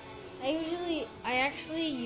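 A child's voice singing two drawn-out, sing-song phrases one after the other, the pitch rising and falling in arches.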